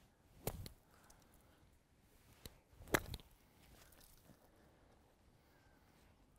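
Golf iron striking a ball off the sand of a waste bunker: a single sharp hit about half a second in, on a decelerating swing that the golfer afterwards calls a full decel. Another sharp click follows about three seconds in.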